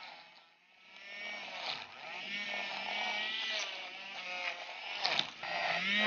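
Battery-operated Aerolatte handheld milk frother whirring as it whips dalgona coffee in a glass bowl. It starts again after a brief break near the start, its pitch wavering as the whisk works through the thickening mixture.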